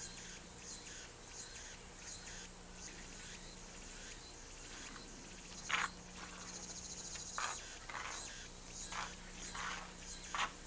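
Insects calling in a steady repeating chirp, about two calls a second, with a few louder calls in the second half.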